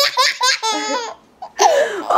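Eight-month-old baby laughing hard in a run of pulsed laughs. There is a short break for breath just past the middle, then the laughing starts again.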